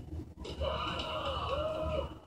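A person's voice played through a television speaker, making two drawn-out vocal sounds with no clear words, the second near the end.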